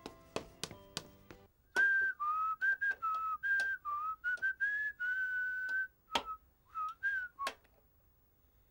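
A short phrase of background music, then from about two seconds in a man whistling a tune in short notes, with sharp clinks of a ladle against cooking pots between them.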